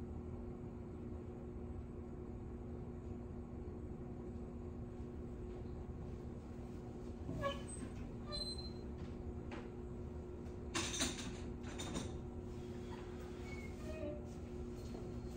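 Steady low hum of an unattended classroom, with one short squeak about halfway through. A few faint knocks and clatters follow near the end, typical of someone rummaging in a back room.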